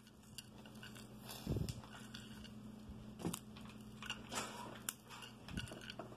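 Goldfish crackers being broken into small pieces by hand on a small plastic plate: faint scattered crunches and clicks, with a few soft bumps against the plate.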